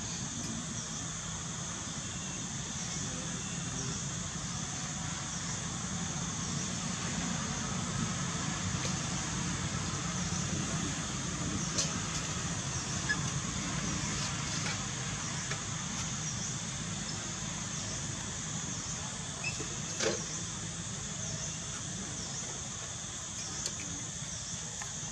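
Steady outdoor background: a low, even rumble under a constant high insect drone, with a few faint clicks about halfway through and again later.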